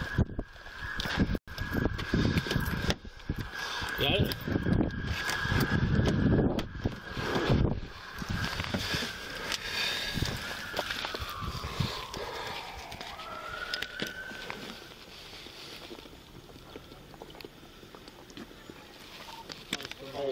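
Knocks and rustling of a body-worn camera jostled as its wearer moves in and out of a police SUV, loudest in the first half. A steady high tone runs through it, then slides down in pitch about halfway through and fades.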